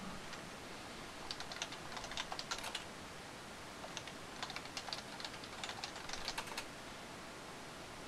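Typing on a computer keyboard: two runs of quick key clicks, one about a second in and a longer one from about four seconds in.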